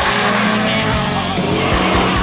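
Background music with a racing car's engine revving and its tyres squealing as it corners hard on the track.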